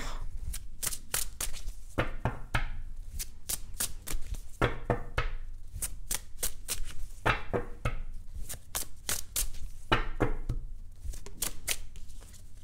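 A large tarot deck shuffled by hand: a quick run of crisp card clicks and flicks, coming in several runs with short pauses between.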